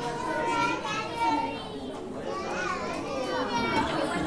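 Young children's voices chattering and calling out, many small voices overlapping.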